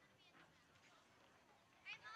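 Faint, distant voices of players and spectators on an open field. Near the end comes a short, high-pitched shout.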